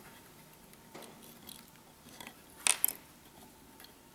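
A razor blade cutting a short piece of thin wire on a wooden block: a few faint scattered clicks, and a sharp double click a little under three seconds in as the blade goes through.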